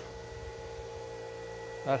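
Steady electrical hum made of a few constant tones, the clearest a mid-pitched one, with a man's voice coming back near the end.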